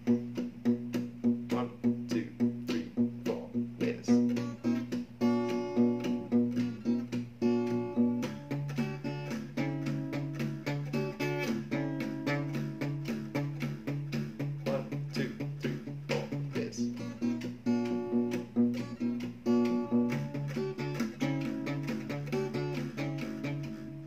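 Steel-string acoustic guitar played fingerstyle: a steady thumb-picked bass note repeating under a plucked melody on the higher strings. The bass moves to a new note about eight seconds in and changes again twice later.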